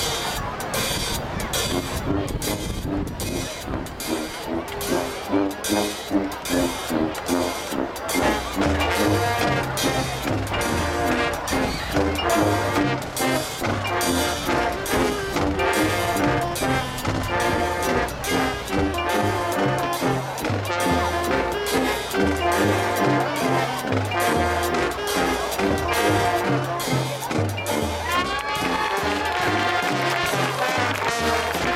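High school marching band playing: steady drum beats and brass, with a stepping bass line coming in about eight seconds in and the full band carrying on together.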